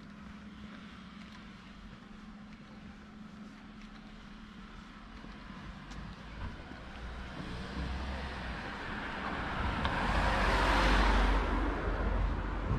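A car approaching along the street and passing close by, its engine and tyre noise swelling gradually to its loudest near the end and then easing off.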